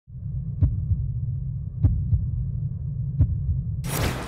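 Dramatic intro sound effect: a low rumbling drone with a heartbeat-like double thump about every 1.3 seconds, ending in a sudden loud whoosh just before the end.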